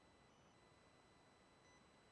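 Near silence: a faint hiss with a few faint, steady high-pitched tones.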